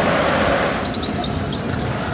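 Loud basketball arena crowd noise. About a second in it thins, and sneakers squeaking on the hardwood court and the ball bouncing come through.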